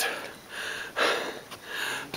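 A person breathing close to the microphone: three short, noisy breaths.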